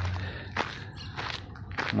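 Footsteps of a person walking on a dirt path at an easy pace, a few separate steps picked up close by a handheld phone's microphone.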